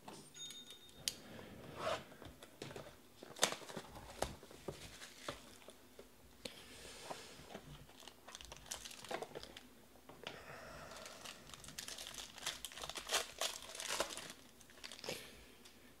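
Trading card box packaging being torn open and handled: crinkling wrapper, tearing and scattered sharp clicks of cardboard. The crinkling comes in patches, thickest about seven seconds in and again over the last few seconds.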